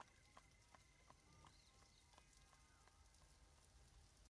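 Near silence: faint room tone with a few faint scattered ticks and short chirps.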